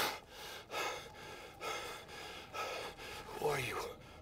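A man gasping for breath, about five short hard gasps, with a groan that falls in pitch near the end. He is winded after a hard fall to the ground.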